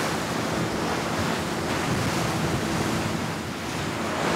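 Rough open sea: waves churning and breaking with whitecaps, with wind, a steady rushing noise.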